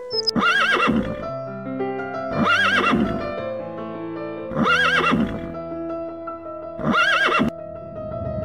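A horse whinnying four times, about two seconds apart, each call short with a pitch that rises and falls, over background music with long held notes.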